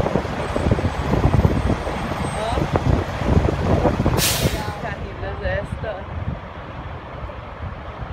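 Convoy of military tractor trucks with flatbed semitrailers driving past close by, their diesel engines rumbling heavily with rattling from the trailers. A short, loud air-brake hiss comes about four seconds in, and the rumble eases after about five seconds as the trucks move off.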